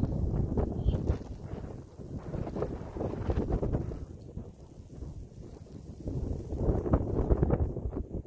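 Snowstorm wind blowing across the microphone in uneven gusts, a low rumbling rush that swells in the first second or so and again near the end.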